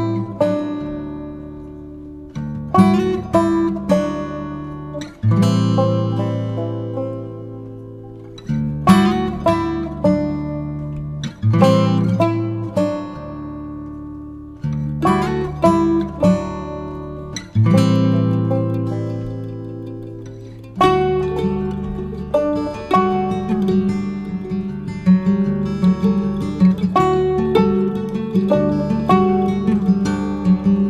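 Background music on acoustic guitar: plucked chords left to ring out and fade every few seconds, turning into busier, steadier picking about two-thirds of the way through.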